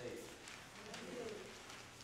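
Faint voices, with a brief pitched vocal sound a little past a second in.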